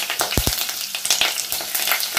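Diced potato and freshly added curry leaves sizzling and crackling in hot oil in a pot, with two short soft knocks about half a second in.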